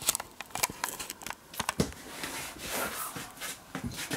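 Irregular light clicks and knocks, with rustling in between.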